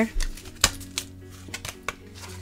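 Tarot cards being handled on a table: one sharp click about two-thirds of a second in, a lighter tap near one second, then a quick run of small clicks near the end. Faint background music runs underneath.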